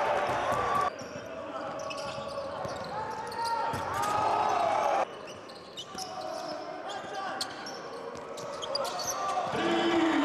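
Basketball game sound in an arena: the ball bouncing, sneakers squeaking on the hardwood court, and voices and crowd noise. The sound cuts off abruptly about a second in and again about halfway, jumping to another play each time.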